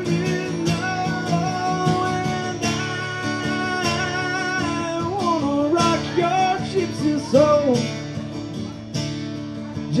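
Strummed acoustic guitar with a man singing long held wordless notes that break into bending vocal runs in the second half.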